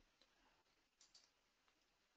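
Near silence, with a couple of very faint clicks about a second in.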